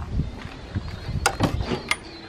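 Footsteps through a doorway onto a tiled floor with a handheld camera moving: a low handling rumble, then a few sharp taps in the second half.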